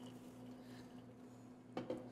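Faint steady hum with quiet handling of popcorn being mixed into a stainless steel skillet, and a short click or two near the end.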